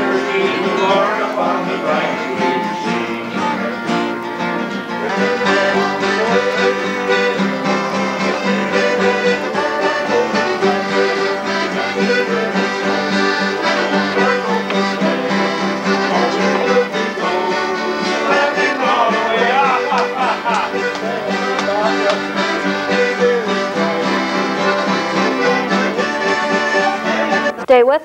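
Accordion playing a lively traditional tune in sustained, full chords.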